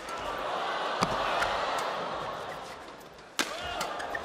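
Badminton rackets striking the shuttlecock in a fast doubles rally, with sharp hits about a second in and again near the end. Arena crowd noise swells and then fades between them.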